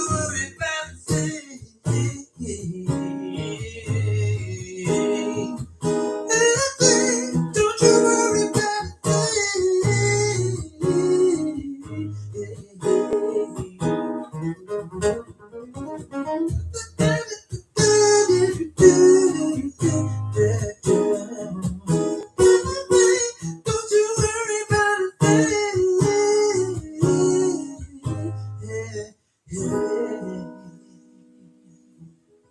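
Acoustic guitar strummed live in a steady rhythm, chords and a melodic line ringing together. It stops briefly near the end, then one more chord sounds.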